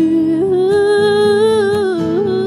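Live acoustic country ballad: a woman sings one long wordless note with vibrato, stepping up in pitch about half a second in, over acoustic guitars.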